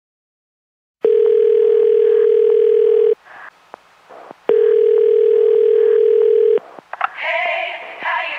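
Telephone ringing tone heard down a phone line: two long, steady rings of one pitch, each about two seconds, with a pause between. Music with singing starts near the end.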